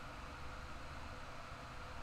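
Faint steady hiss of microphone and room background noise.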